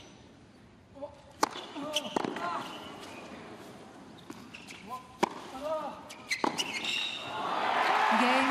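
Tennis ball bounced on a hard court before a serve, then sharp racquet strikes on the ball through a rally, with short vocal calls between the shots. Crowd noise swells into cheering near the end.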